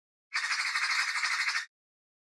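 A single harsh, rasping squawk about a second long, fluttering rapidly, that starts shortly after the beginning and cuts off suddenly.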